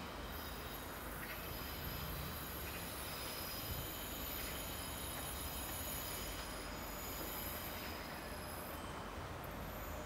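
Alstom Coradia LINT diesel multiple unit running slowly into the station: a steady low rumble of engine and wheels, with thin high tones of wheel squeal on the curving track.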